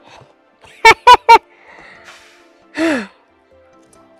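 A person's short laugh of three quick high bursts, then a breathy sigh falling in pitch, over faint background music.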